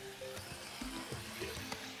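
Soft background music of short, steady notes changing in pitch, with faint sizzling of onions, peppers and carrots frying in olive oil in the pot beneath it.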